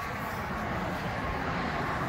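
Steady, even vehicle rumble with no distinct beat or pitch.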